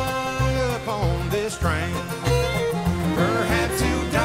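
Bluegrass band playing an instrumental break: acoustic guitar and banjo over a steady walking bass line, with fiddle playing sliding melody notes.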